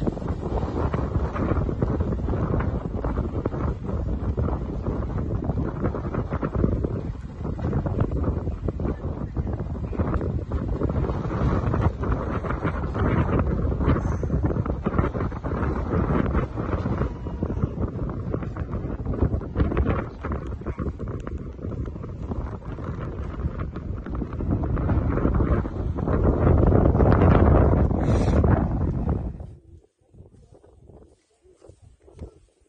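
Wind buffeting the microphone outdoors: a loud, gusting low rumble that swells and eases, strongest near the end.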